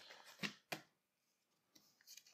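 Near silence, with two faint short rustles or clicks in the first second.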